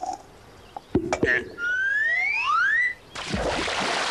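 A hoof kick to a turnip: a sharp knock about a second in, then a rising whistle sound effect as it flies. A splash as it lands in a pond near the end.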